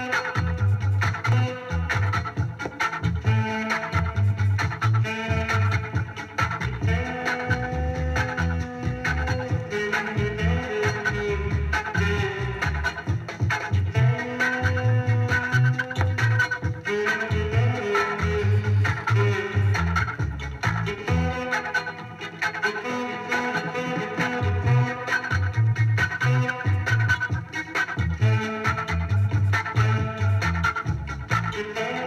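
1970 reggae 7-inch vinyl single playing on a turntable: a bass line and melody over a steady beat.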